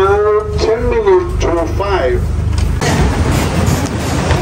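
Motorboat engine running with a steady low drone. A person's voice calls out over it for about the first two seconds.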